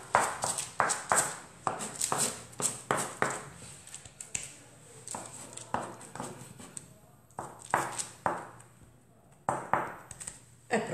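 Knife blade pressed and tapped against the board along the edges of a flattened sheet of minced meat, with hand pats on the meat: a run of irregular knocks, two or three a second, sparser and quieter from about seven seconds in.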